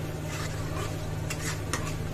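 A spatula stirring thick masala paste in a black iron kadhai, scraping against the pan a few times, with a faint sizzle from the paste frying in oil. The masala is being fried until the oil separates.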